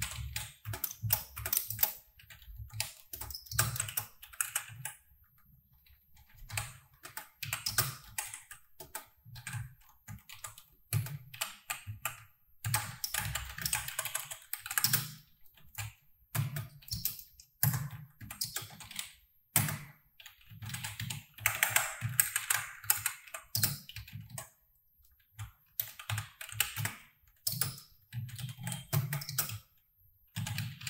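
Typing on a computer keyboard: runs of quick key clicks in bursts, broken by short pauses, as code is entered.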